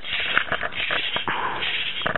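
Rustling handling noise with scattered small clicks and knocks as plastic toys are moved about by hand.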